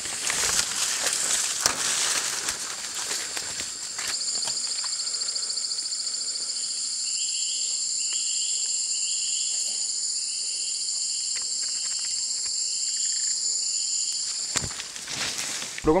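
Rainforest ambience: bare feet rustling through leaf litter in the first few seconds. Then a loud, steady, high insect buzz comes in about four seconds in and cuts off near the end, with a short call repeating about once every 0.7 seconds in the middle.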